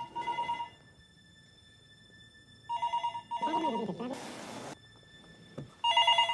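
Telephone ringing in a double-ring cadence: pairs of short electronic rings, repeating every few seconds.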